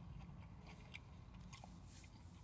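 Faint chewing of a mouthful of crispy panko-breaded fish sandwich, with a few soft, short crunches over a low steady hum.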